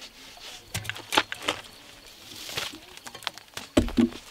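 Faint outdoor background with a few scattered light clicks and knocks, and a single low thump near the end.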